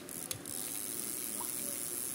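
Small spinning reel being cranked by hand: a click shortly after the start, then a steady gear whirr as the rotor spins, turning smoothly.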